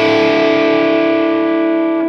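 Fender Stratocaster played through an EVH 5150 III 50-watt amp's blue channel at mid gain: a single overdriven chord held and left ringing, its brightness slowly fading.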